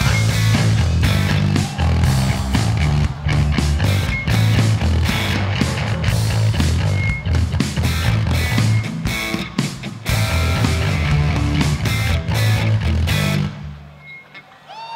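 Loud live rock band playing, with heavy bass and pounding drums. The music breaks in suddenly and stops abruptly near the end.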